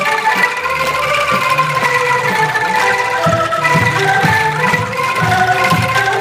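Angklung ensemble with bamboo xylophones and a backing band playing an instrumental passage, with held, ringing bamboo notes carrying the tune. A steady drum beat comes in about three seconds in.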